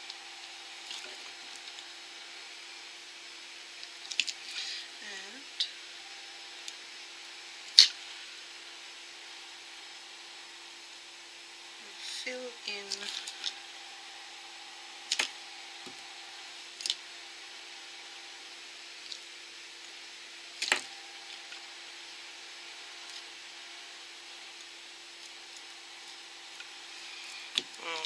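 Steady low hum with scattered light clicks and taps from handling a nail polish bottle and brush while polish is brushed onto a fingernail; the sharpest click comes about eight seconds in.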